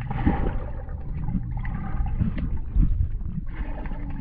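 Pool water heard through a submerged GoPro: a steady, muffled low rumble of water moving around the camera as a swimmer wades, with a few faint knocks.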